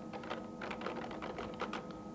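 Typing: keys struck one after another in irregular clicks, several a second.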